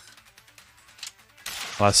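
Quiet sound effects from an animated fight scene, with a short sharp hit about a second in and a louder noisy swell shortly after. A man starts talking at the very end.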